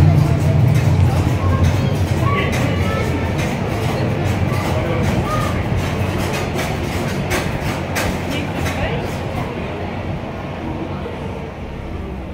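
Earthquake simulator's deep rumble with rattling and clattering, recreating the shaking of the 1995 Kobe earthquake; the rumble is loudest at first and gradually dies away.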